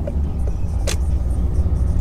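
Car engine and road noise heard from inside the cabin, a steady low rumble, as the car pulls away from a stop in first gear. A single short click comes about a second in.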